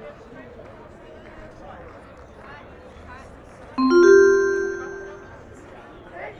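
Public-address chime: two bell-like notes, a lower one then a higher one, struck almost together about four seconds in and ringing out over about a second and a half, over steady crowd chatter.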